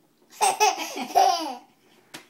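Baby laughing: one burst of laughter starting about half a second in and lasting about a second, falling in pitch at the end.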